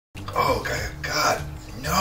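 A man's wordless, strained vocal noises of disgust at the taste of a gin martini.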